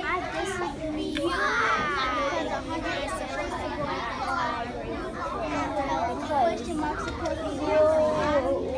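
Many young children talking at once, their voices overlapping in a busy classroom chatter with no single voice standing out.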